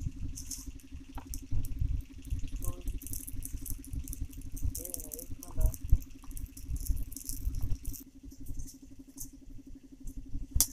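Dry leaves and twigs rustling and crackling as kindling is handled and a small wood fire is lit between stones, with irregular low bumps and a steady low hum underneath.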